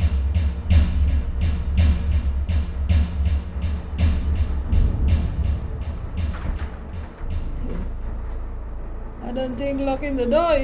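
Suspense film score: a deep low drone under rapid drum hits, about three a second, which thin out and fade about seven seconds in. A voice begins just before the end.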